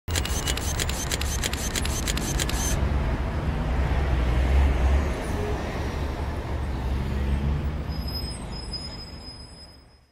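Steady low rumble of background noise, with a quick even run of sharp clicks, about five a second, in the first three seconds; the rumble fades out near the end.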